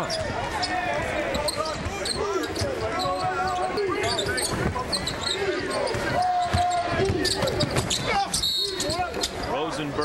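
Court sound of a college basketball game in a large arena: the ball bouncing on the hardwood, sneaker squeaks and players' and crowd voices. Near the end a shrill referee's whistle blows, stopping play for a foul.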